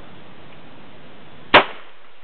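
A single .22 rifle shot: one sharp crack about one and a half seconds in, dying away quickly.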